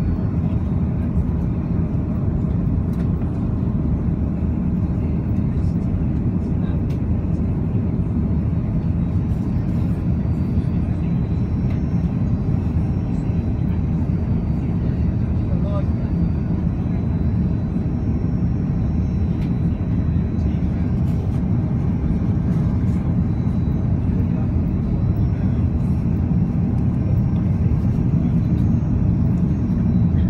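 Steady airliner cabin noise on final approach: the rumble of the jet engines and airflow heard from inside the cabin, with a faint thin high tone above it.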